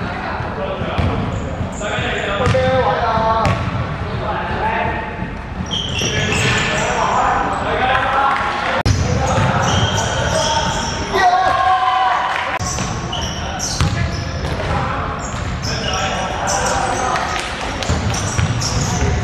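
Indoor basketball game in a reverberant sports hall: a basketball bouncing on the hardwood court, short high sneaker squeaks, and players and spectators calling out over one another.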